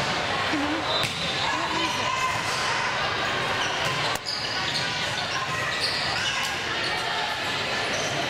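A volleyball being struck during a rally, with sharp hits about a second in and again about four seconds in, echoing in a large gym over steady chatter and calling from spectators and players.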